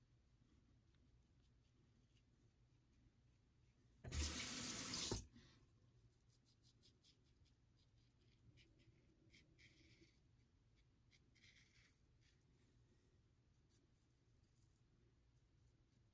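A bathroom tap runs in a short burst of about a second, starting and stopping abruptly, about four seconds in. The rest is near silence, with faint short scrapes of a Gillette Tech safety razor cutting lathered stubble.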